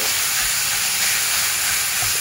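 Minced meat and chopped carrot frying in a pan, giving a steady sizzle as they are stirred with a wooden spatula.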